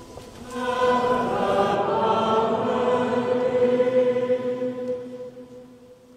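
Choir singing slow, long-held notes, fading out near the end.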